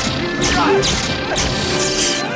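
Sword-fight sound effects: several sharp clashing strikes, roughly every half second, over a dramatic music score.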